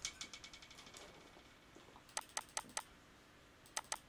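Computer mouse being used: a quick run of scroll-wheel ticks fading out over the first second, then sharp clicks, four about two seconds in and two more near the end.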